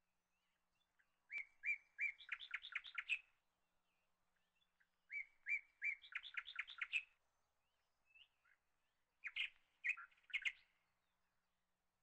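A bird singing: a phrase of a few even notes followed by a quick run of higher notes, given twice, then a shorter phrase near the end.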